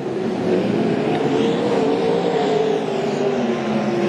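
Winged dirt-track sprint cars' V8 engines running at race speed, a loud steady engine note that rises a little in pitch and falls back again around the middle.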